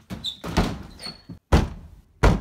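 Interior wooden door thudding several times against a blocked frame, the hardest thud about one and a half seconds in, with short high squeaks in between.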